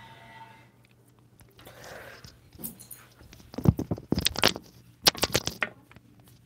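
Drawing tool scratching on paper in sketching strokes: two bursts of quick, scratchy back-and-forth strokes, the first about three and a half seconds in and the second about five seconds in.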